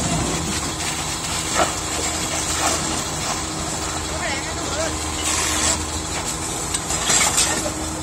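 A steady engine hum with a high, even hiss over it, and indistinct voices of people talking.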